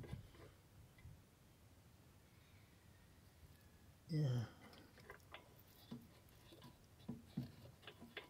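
Mostly quiet, with a few faint clicks and taps in the last few seconds.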